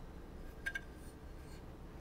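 Quiet room tone with a short cluster of faint light clicks about two-thirds of a second in, from hands handling a small metal-cased video capture card.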